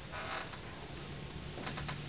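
Quiet room noise with a steady low hum, a brief soft sound just after the start and a few quick faint clicks near the end.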